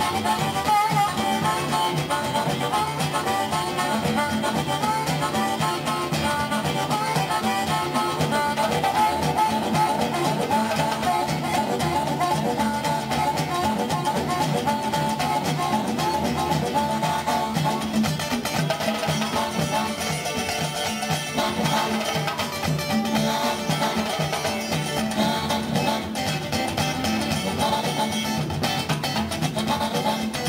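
Blues harmonica playing a fast, chugging train imitation over strummed acoustic guitar and a hand drum, in a live trio performance.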